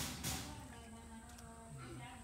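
A brief splash of water as a fishing net is worked in a shallow muddy ditch, followed by faint, steady background music.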